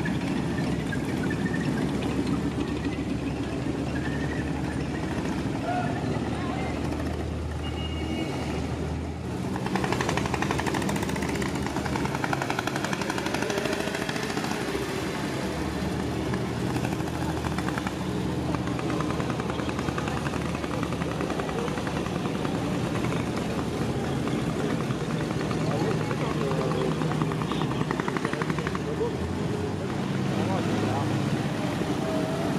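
Engines of WWII military vehicles passing at parade pace: a Stuart light tank, then small motorcycles, over a crowd talking. The sound changes abruptly about nine seconds in.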